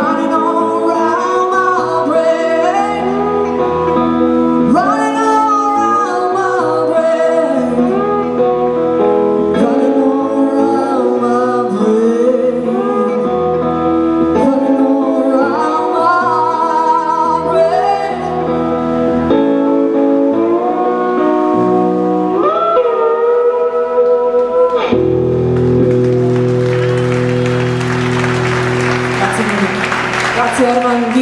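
A woman sings a blues song to a slide-played lap steel guitar, with gliding notes from both voice and guitar. The song ends about 25 seconds in on a held final chord, followed by audience applause.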